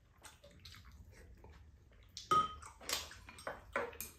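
Quiet slurping and eating sounds at a meal, then a little past halfway a metal spoon clinks against a ceramic bowl with a short ring, followed by several louder spoon-in-bowl sounds and slurps near the end.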